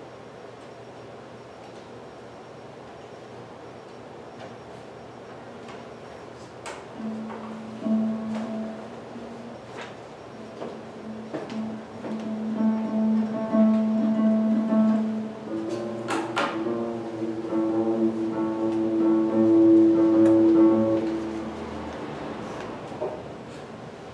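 Pedal harp played with long-ringing low and middle notes that start about seven seconds in after a hush of room tone, building into overlapping sustained tones and dying away near the end.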